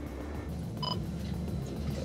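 Steady low hum with a single short electronic beep just under a second in.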